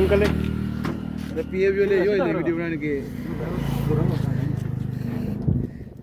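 Tractor diesel engine idling steadily, with a man talking over it briefly; the engine sound cuts off about five and a half seconds in.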